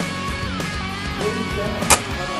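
Background music with guitar. Near the end comes a single sharp crack, the airsoft sniper rifle firing.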